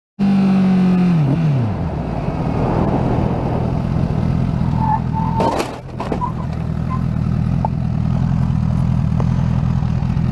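Motorcycle engine with its revs dropping, then idling steadily. About halfway through, a brief high squeak and then a short sharp impact: the car striking the bike.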